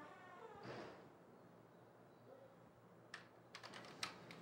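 Near silence, then a few faint, quick clicks of typing on a keyboard near the end.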